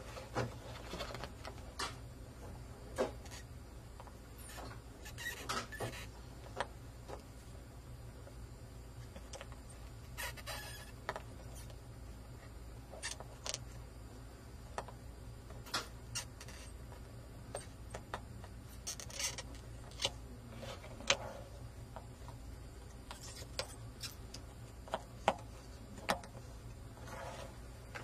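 Soldering iron tip working on a circuit board's solder joints while a control is desoldered: scattered faint clicks and short scrapes over a low steady hum.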